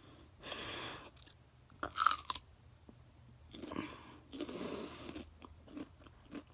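Chewing and crunching on a mouthful of raw pepper, with small clicks of the bites. A few louder stretches of noise come in between, the loudest about two seconds in.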